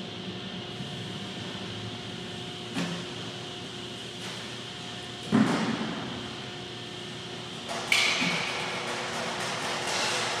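Hand pallet jack moving a heavily loaded pallet across a concrete warehouse floor: metal clanks and knocks, the loudest a clunk about halfway through that rings on in the large room, and a brief hiss and knock about eight seconds in, over a steady background hum.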